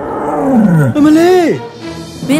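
Thunderous lion-like roar sound effect: a rough roar sliding down in pitch over about a second, then a shorter swell that rises and falls again.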